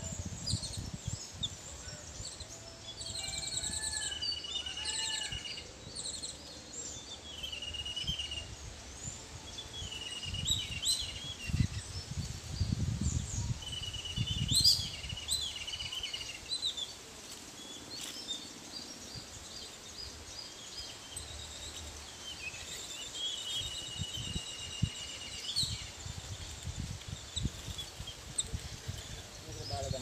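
Several birds chirping and singing in short, gliding phrases, over soft low knocks and rustles of hands working bowls of dry flour, heaviest about halfway through.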